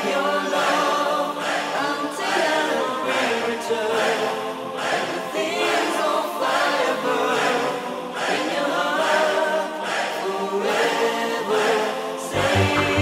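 1990s eurodance breakdown: choir-like sung vocals over sustained chords, with the kick drum and bass line dropped out.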